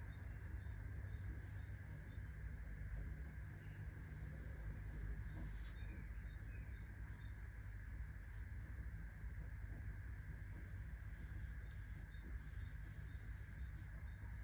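Quiet background ambience: a steady low hum with several runs of short, high, evenly spaced chirps from small animals.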